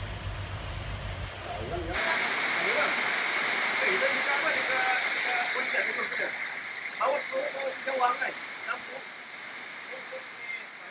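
Very heavy tropical rain pouring down, a dense steady hiss of rain on the ground and roofs; the speaker calls it one of the heaviest rains he has ever heard. A low rumble fills the first two seconds, and brief voices sound faintly over the rain later on.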